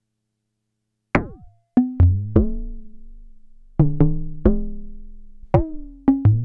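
Electronic bongo from a Make Noise Eurorack modular: a frequency-modulated Dual Prismatic Oscillator struck through the Optomix low-pass gate. About a second in, a run of about eight hits at an uneven rhythm begins, each a sharp knock whose pitch drops at once and then rings away. The pitch and timbre change from hit to hit as the Wogglebug's random voltages shift the oscillator and the amount of frequency modulation.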